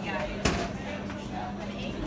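One sharp knock about half a second in: a soda can dropping inside a vending machine and striking the metal inside.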